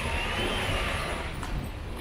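Street traffic noise with a low rumble, and a faint high whine that rises and then falls over the first second or so.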